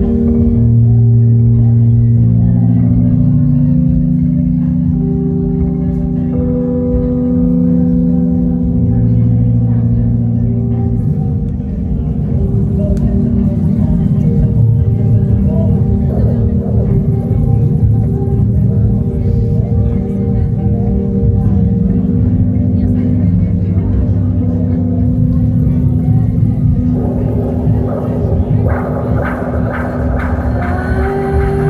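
Instrumental passage played live on an electronic keyboard. Held low chords change every few seconds, then about twelve seconds in they give way to a denser, rumbling low texture, with a brighter swell near the end.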